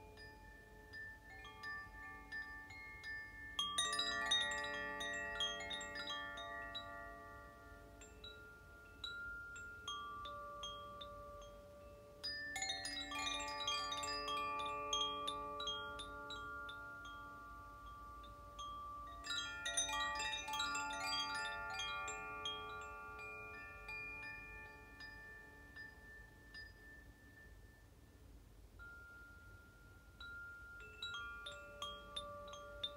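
Wind chimes ringing: three flurries of several metal tones struck together, each leaving long ringing notes that slowly die away before the next.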